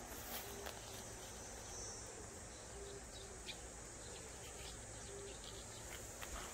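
Faint steady chirring of insects, with a few light clicks.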